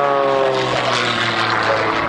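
Extra 330XS aerobatic plane's piston engine and propeller, loud, the engine note falling in pitch over the first second and then holding steady as the plane climbs steeply.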